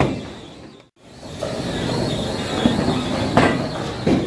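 Bowling alley din: the steady low rumble of bowling balls rolling down the wooden lanes, with a short sharp clatter near the end. The sound drops out briefly about a second in.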